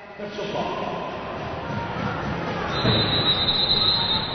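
Crowd in an indoor basketball arena applauding and cheering during a stoppage after a foul, with a long, steady, shrill whistle starting near the end.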